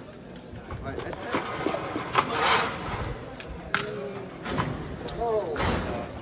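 Irregular knocks and clicks from a bipedal humanoid robot being handled and stepping on a hard floor, a few seconds apart, under faint voices.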